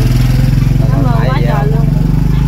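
A motorbike engine running steadily close by, a loud low drone, with a short burst of talk over it about a second in.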